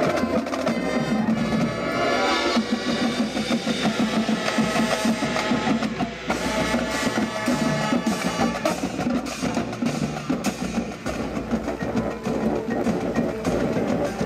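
High school marching band playing its field show: winds over the drumline and the front ensemble's marimbas and mallet percussion, with drums and mallet strokes prominent.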